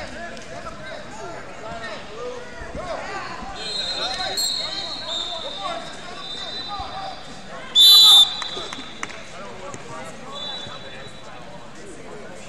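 A referee's whistle gives one loud, shrill blast of about half a second, roughly two-thirds of the way through, stopping the wrestling. Fainter steady whistle tones sound earlier and near the end, over the babble of many voices in a large hall.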